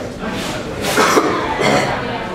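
A person coughing in short, harsh bursts, three in quick succession, over the murmur of voices in the hall.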